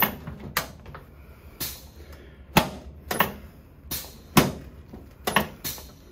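Chiropractic adjustment of the upper back on a padded treatment table: about ten sharp knocks and clacks, irregularly spaced over several seconds.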